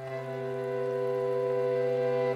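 Bandoneon holding a sustained chord over a steady low bass note, growing slightly louder.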